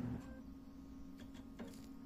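Brother MFC-L5700DN laser printer starting back up in normal mode after leaving maintenance mode: a faint steady low hum with a few soft clicks in the second half.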